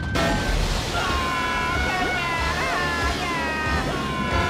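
Cartoon sound effect of a flood of water bursting out and rushing, a dense steady hiss that starts suddenly, with music over it.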